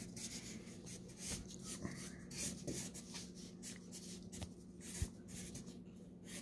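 Black Sharpie permanent marker drawing on a paper sketch pad: a run of short, quick felt-tip strokes across the paper.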